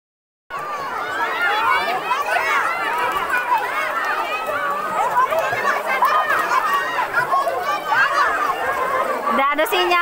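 A crowd of voices, many of them children's, chattering and calling over one another. It cuts in suddenly about half a second in.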